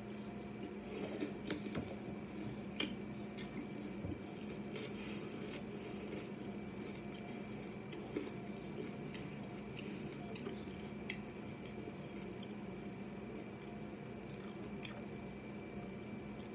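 Quiet, wet chewing of a mouthful of Lucky Charms Honey Clovers cereal in milk, with small scattered clicks mostly in the first few seconds, over a faint steady hum.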